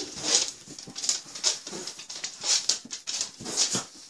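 Two pets play-fighting on a bed: a run of short, hissy bursts of breath and scuffling, about two a second.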